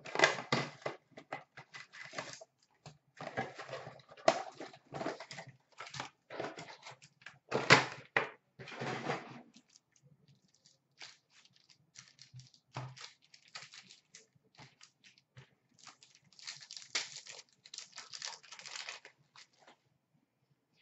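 A cardboard trading-card box being opened and foil hockey card pack wrappers crinkling and tearing open, in irregular bursts of rustling and crackling. There is a sparser stretch past the middle, then more crinkling near the end.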